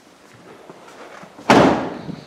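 The tailgate of a Hyundai i30 hatchback being shut: one loud slam about one and a half seconds in, dying away quickly.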